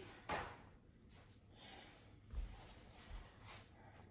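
Faint handling noises over quiet room tone: a brief rustle-like scrape just after the start, then two soft low thumps about a second apart.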